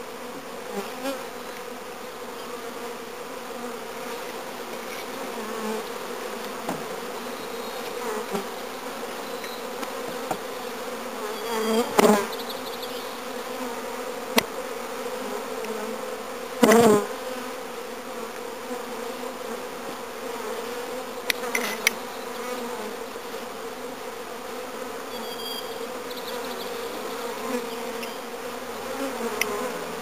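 Steady hum of a mass of honey bees flying around a hive just filled from a package. Two louder bursts about twelve and seventeen seconds in, and a few small clicks.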